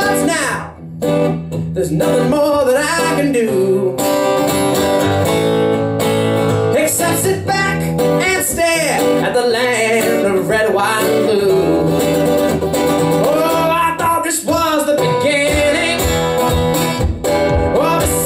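Live acoustic guitar playing a blues song, with a man's voice singing along at the microphone.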